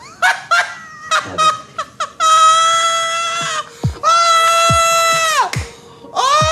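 Two long, high-pitched shrieks from a person's voice, each held about a second and a half at one pitch and dropping off at the end. A few short laughs or exclamations come before them.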